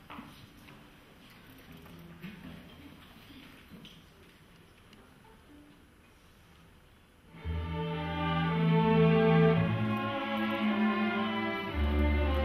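Low room noise, then about seven seconds in a string orchestra of violins, cellos and double basses comes in together, playing slow held chords over a deep bass line.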